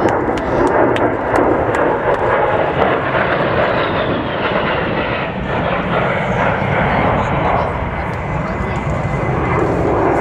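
Jet noise from a Fairchild Republic A-10 Thunderbolt II's two General Electric TF34 turbofan engines as the aircraft flies past: a loud, steady rushing sound, with a faint high whine that slides down in pitch in the middle.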